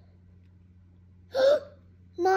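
A boy's single short startled gasp about one and a half seconds in, over a faint steady low hum.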